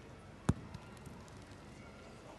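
A thrown pétanque boule landing on the hard dirt terrain with one sharp thud about half a second in, followed by a few faint ticks as it settles.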